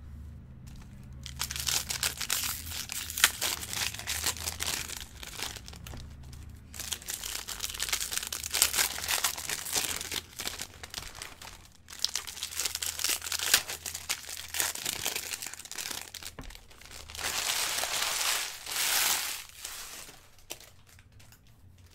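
Foil wrappers of baseball card packs crinkling and tearing open, with cards being handled and set down on stacks, in several bursts with short pauses between them.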